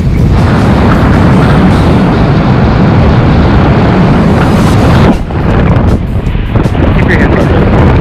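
Strong wind buffeting the camera's microphone during a tandem skydive, a loud continuous rumble with brief dips a little after halfway through.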